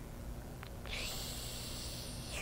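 A person's long, faint, hissy breath out, starting about a second in and heard close on a clip-on microphone. Two faint small clicks come just before it.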